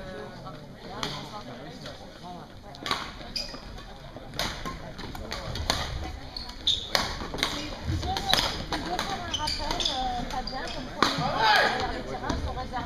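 Badminton rackets striking a shuttlecock: a series of sharp, irregularly spaced hits over the murmur of voices in an echoing sports hall.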